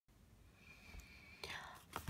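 Near silence: faint room tone, with a soft rustle about one and a half seconds in and a short click at the very end.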